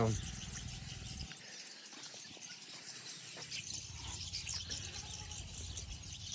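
Faint outdoor ambience with light, high-pitched chirping in the background and a low hum that fades out for a couple of seconds in the middle.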